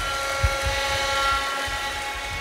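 A steady pitched hum with several overtones sets in and then fades out. Irregular low thuds run beneath it.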